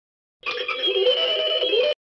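A short electronic sound effect: a few held, slightly wavering tones that start about half a second in, last about a second and a half, and cut off abruptly.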